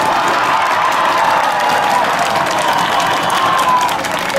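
Spectator crowd cheering and shouting during a long touchdown run.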